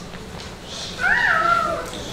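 A short, high-pitched cry about a second in, rising and then falling in pitch.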